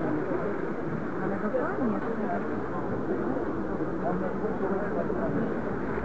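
Steady chatter of many people talking at once around a tennis court, overlapping voices with no single speaker standing out.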